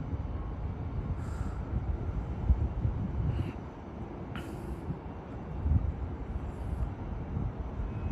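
Amtrak Capitol Corridor passenger train, cab car leading, approaching slowly over curved station trackwork: a steady low rumble of wheels and running gear, with a few brief higher-pitched sounds over it.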